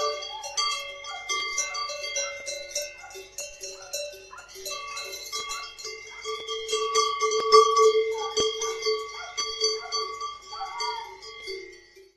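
Many cowbells of different pitches ringing together in an irregular, continuous clanging, as from a herd of belled cows moving about, loudest around the middle.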